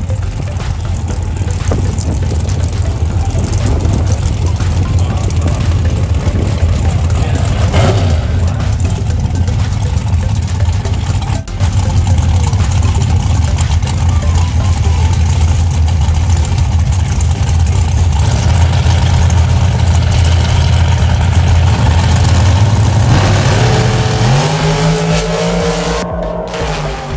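Drag-racing car engine running loudly and steadily at the starting line, a deep continuous noise with no break. Near the end a rising tone comes in and the engine noise falls away.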